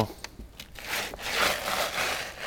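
A soft moccasin shoe scuffing and scraping across snow on a wooden porch step as the wearer tests the footing: a gritty rubbing that starts about a second in and swells and eases.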